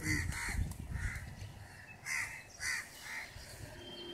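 Crows cawing repeatedly: about six short caws spread through the few seconds.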